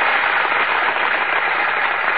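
Audience applause, a dense even clatter of many hands, on a narrow-band old radio broadcast recording.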